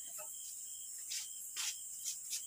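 Steady high-pitched chirring of crickets with no singing or guitar, and two short rustles about a second in and near the end.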